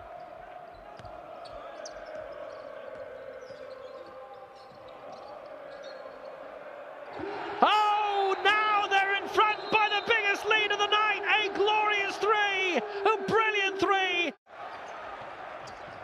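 Basketball arena crowd murmur, then from about halfway a rapid run of high, chirping sneaker squeaks on the hardwood court, about three a second, louder than the crowd. The squeaks stop suddenly a little before the end.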